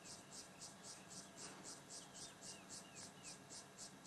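Faint insect chirping in a steady, even rhythm of about five pulses a second, with a few faint short, falling bird chirps.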